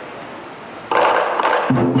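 Lion dance percussion band (drum, gong and cymbals) coming in loudly about a second in after a quieter lull, with a ringing low tone entering shortly after.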